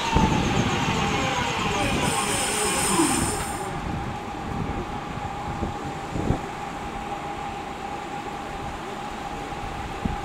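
Purple Northern passenger multiple-unit train moving past and drawing away along the platform. Its running noise fades after about four seconds, and a steady high whine runs throughout.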